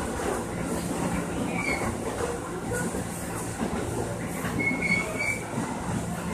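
Electric commuter train running, heard from inside the passenger car: a steady rumble and hum of the moving car, with brief high-pitched wheel squeals about a second and a half in and again around five seconds in.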